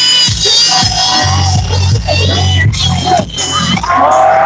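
Loud music with a heavy bass line and a vocal line, played back at a party; the bass comes in strongly about a second in.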